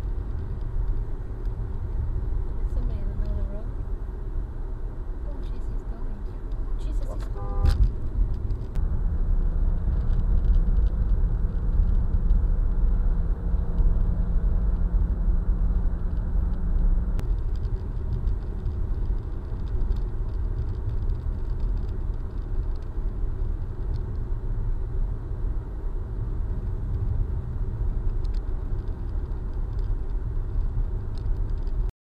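Car cabin road and engine noise from a moving car, heard from the dash: a steady low rumble. A brief pitched sound cuts through about seven to eight seconds in.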